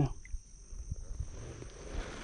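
Insects trilling steadily at a high pitch, with a soft rush of water about a second in as a released bass swims off from the kayak's side.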